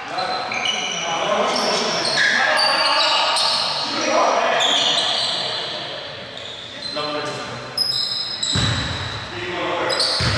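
Echoing gym sounds of a basketball game: players' voices, short high squeaks of sneakers on the court floor, and a basketball bouncing, with heavier thuds near the end.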